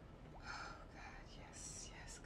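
A person whispering faintly in a few short breathy phrases, with no voiced pitch.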